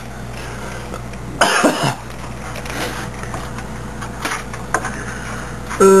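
A man coughs once, about a second and a half in, over a steady low hum. Later come a few faint clicks as a video card is pushed against its motherboard slot.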